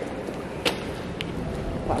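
A sharp click about two-thirds of a second in and a fainter click half a second later, over a steady low background noise.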